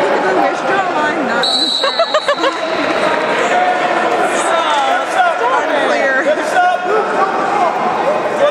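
Many overlapping voices shouting and calling out at once in a large, echoing gym during a wrestling bout, with a high steady tone lasting about a second, starting about a second and a half in.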